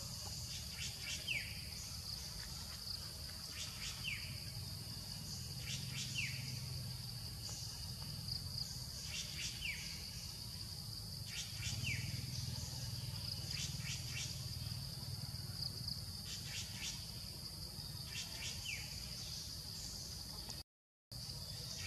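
Forest ambience: a steady high insect drone, over which a bird repeats a short falling call every two to three seconds, with bursts of quick high chips in between and a low rumble underneath.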